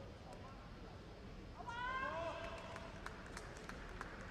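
A person's short high-pitched vocal cry about halfway through, rising then falling in pitch, followed by a scattering of light taps.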